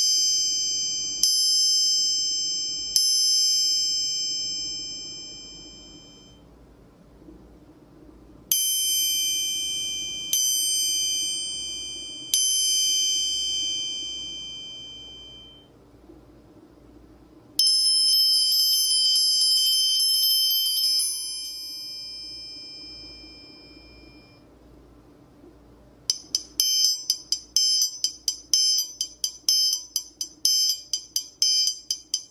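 Steel triangle struck with a steel beater. Single strikes ring out and fade over a few seconds, with three strikes close together around 9–12 s. About 18 s in comes a fast roll of strikes that rings and fades, and from about 26 s quick strikes follow while the hand grips the triangle's sides, damping each note to a short, crisp ting.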